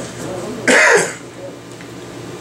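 A man gives a single short cough, clearing his throat, a little under a second in.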